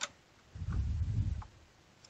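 A stack of paper being pushed and slid into a laser printer's input tray by hand: a short click, then about a second of dull, low rubbing and shuffling.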